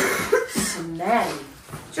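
People's voices with a short laugh.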